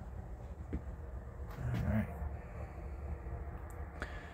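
A steady low rumble with a few faint light clicks, and a man saying "right" about two seconds in.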